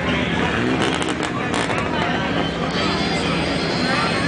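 General hubbub of people talking, mixed with a vehicle engine running, with a few short clicks about a second in.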